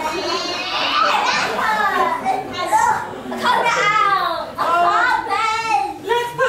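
Speech only: several voices talking and exclaiming over one another, some high-pitched.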